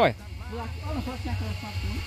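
A man's voice says a short 'ó' at the start, then faint murmured speech continues over a steady low rumble and hiss.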